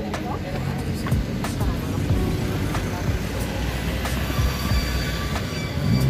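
Street ambience: a steady traffic rumble mixed with background music. A few light knocks come from plastic flower pots being handled.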